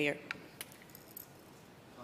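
A few faint, light clicks and jingles over quiet room tone in a large chamber, as of small objects being handled.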